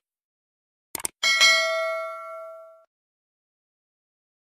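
Subscribe-animation sound effect: two quick mouse clicks about a second in, then a bright bell ding that rings and fades out over about a second and a half.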